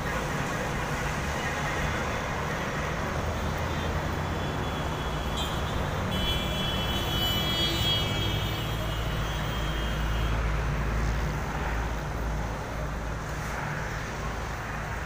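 Steady outdoor road-traffic noise with a low engine rumble, a little louder in the middle. A high, steady tone sounds over it for about four seconds, from about six seconds in.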